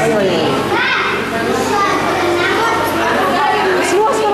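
Spectators talking over one another, with children's voices among them.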